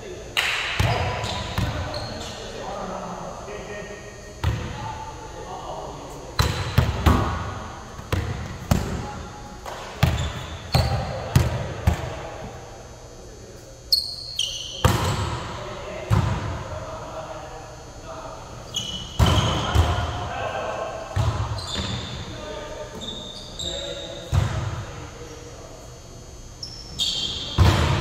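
Indoor volleyball rally: sharp smacks of hands and forearms hitting the ball, many of them a second or two apart, with the ball thudding on the hardwood court, echoing in a large gym. Players' voices call out between the hits.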